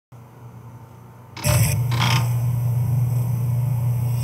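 A steady low electrical hum starts suddenly about a second and a half in, with two brief hissy bursts just after it. Only a faint hiss comes before it.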